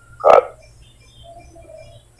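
A short pause in a man's talk: one brief throaty vocal sound about a third of a second in, then faint low hum with a few faint short tones.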